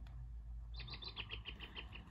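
A bird's faint, rapid chirping trill of short falling notes, about eight to ten a second, starting just under a second in, over a low steady hum.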